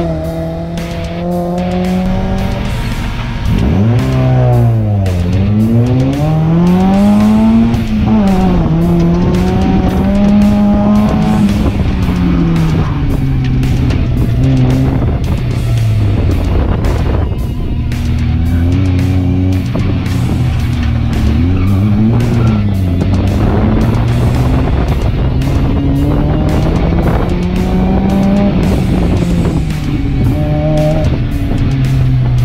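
Mazda MX-5 Miata's 1.6-litre four-cylinder engine revving hard and dropping back again and again as it accelerates, shifts and brakes through a slalom course, over background music.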